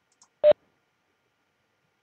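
A single short electronic beep about half a second in, as the Webex microphone is switched to mute.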